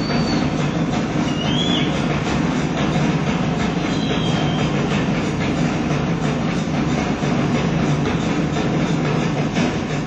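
Rock drum kit played in a fast, dense live drum solo: continuous rolls and strokes on snare, toms and cymbals with no other instruments. It comes through a lo-fi concert bootleg with a dull top end.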